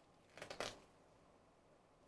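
A brief rustle of a printed CD booklet being handled, about half a second in, against near silence.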